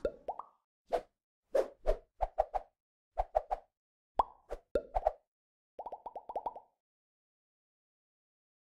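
Cartoon-style plop sound effects of an animated logo sting: a string of short, separate pops, some rising in pitch, ending in a quick run of them about six seconds in.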